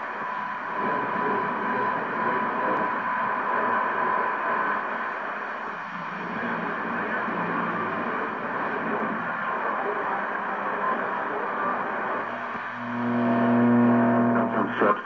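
Hiss and static from a Hammarlund HQ-100A tube communications receiver as it is tuned between stations, heard through its speaker. A steady whistle sounds for the first few seconds, and a low droning tone comes in near the end.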